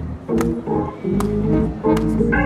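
Hammond console organ played live: sustained chords that change about every second, each new chord starting with a sharp click.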